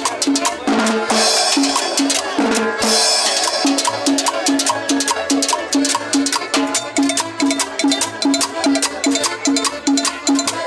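Live dance music from a small band with accordion, upright bass and guitar, over a steady percussion beat with about three bass pulses a second.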